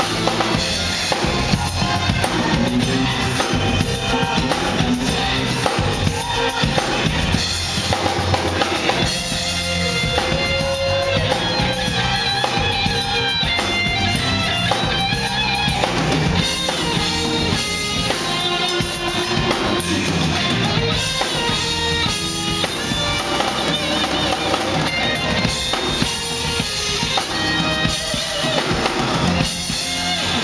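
A live band plays an upbeat instrumental groove on drum kit, electric guitar and electric bass.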